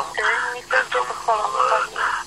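Speech on a radio call-in broadcast, thin-sounding with no low end, as a voice comes on air or over a phone line.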